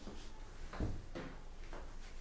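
Silk saree being handled and spread out by hand: faint rustling of the fabric with a few soft bumps.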